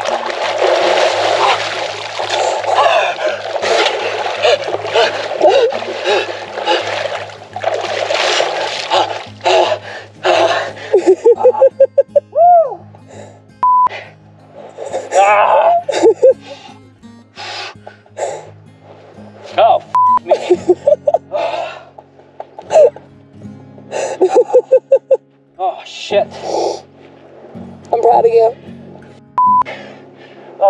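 Heavy water splashing as a person plunges under and thrashes in a lake, lasting about the first ten seconds, followed by gasps and wordless shouts, all over background music.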